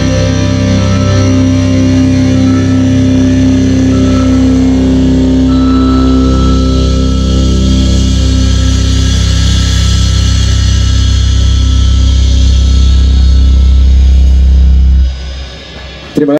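Heavy metal band playing live through a loud festival PA, holding a sustained distorted chord with heavy low bass and a hiss of cymbals over it. The chord cuts off suddenly about a second before the end.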